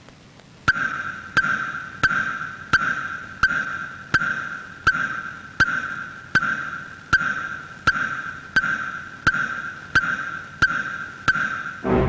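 A film suspense sound effect: a regular ticking, about three ticks every two seconds, each sharp tick over a steady high ringing tone, starting about a second in. It counts down a five-minute ultimatum.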